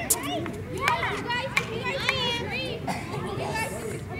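Children's voices calling and chattering across outdoor tennis courts, with a few sharp pops of tennis balls being struck.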